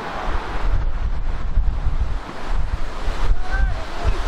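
Wind buffeting the microphone: a heavy, gusting low rumble that drowns out most of the pitch-side sound.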